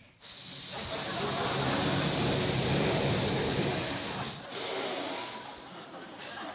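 A man making a long, loud hissing 'shhh' with his mouth into a microphone, imitating a barbecue fire hissing out as it is doused. The hiss swells over the first two seconds, breaks off briefly about four and a half seconds in, and then goes on more softly.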